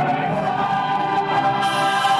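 A stage musical's cast singing together in chorus with musical accompaniment, holding long sustained notes.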